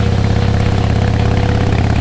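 Harley-Davidson Heritage Softail Classic's air-cooled V-twin engine running steadily while the motorcycle cruises along a road.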